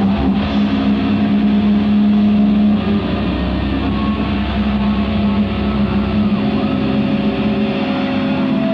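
Electric guitar and bass amplifiers droning with held feedback tones over a steady low hum. No drumming.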